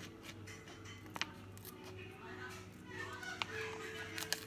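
Scissors cutting into a sealed packet: a few sharp snips spread out, the clearest about a second in and again about three and a half seconds in.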